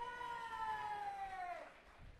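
One person's long, high vocal whoop of support, held on a single note, then sliding down in pitch and stopping near the end.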